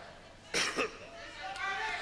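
A man coughs once into his hand about half a second in, a short cough heard through the stage microphone, followed by faint voices.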